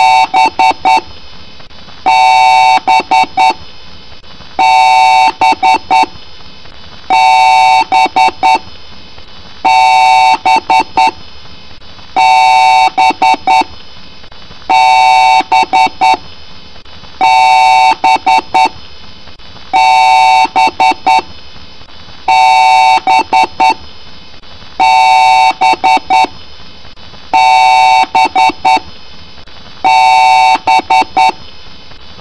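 Very loud electronic beeping pattern repeating about every two and a half seconds: a long beep followed by a quick run of three or four short beeps, cycling about twelve times.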